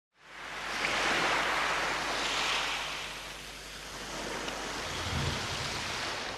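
Title-sequence sound effect: an airy, wind-like whoosh that swells in within the first second, eases off around the middle and swells again, with a faint low rumble near the end.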